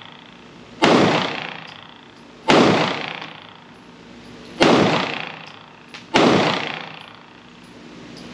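Four pistol shots from a Smith & Wesson M&P Shield Plus in .30 Super Carry, fired at an uneven pace about one and a half to two seconds apart. Each shot has a long reverberant tail in the enclosed range.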